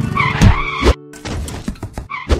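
Cartoon motorcycle sound effects, an engine revving and a skid, with two heavy thumps in the first second, over a music jingle.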